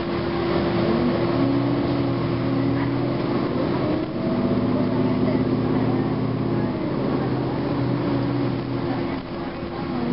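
Interior of a 2009 Gillig Advantage low-floor transit bus under way: its Cummins ISM diesel engine and Voith automatic transmission running, the engine's hum changing about four seconds in. A steady whine runs underneath.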